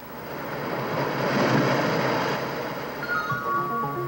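A rushing wash of noise that swells to a peak about a second and a half in and then fades. About three seconds in, background music with bell-like mallet notes takes over.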